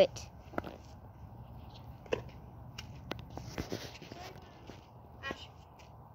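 Faint background noise with a few scattered short clicks and a brief rustle about three and a half seconds in.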